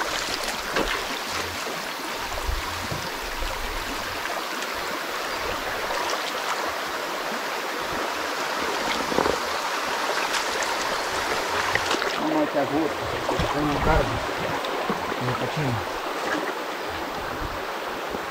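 Shallow rocky stream running over stones, a steady rush of flowing water.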